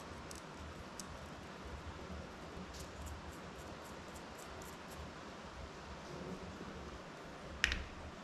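Light clicks and ticks of carbon-fibre quadcopter frame plates being handled, with a quick run of small ticks about three seconds in. A sharper click near the end as the frame is set down on the bench mat.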